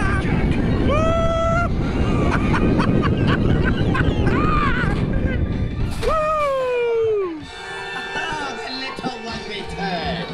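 Rushing wind and track rumble on the Incredicoaster, a steel roller coaster, with riders whooping and screaming, one long falling scream about six seconds in. About seven and a half seconds in the rumble drops away as the train slows, and music with steady held tones comes up.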